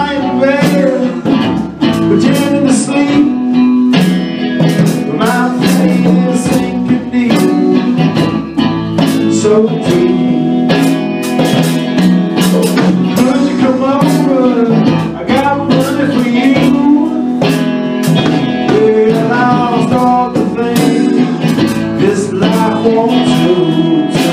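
Live band playing a blues-style song: electric guitar with a steady drum beat and a singing voice over it.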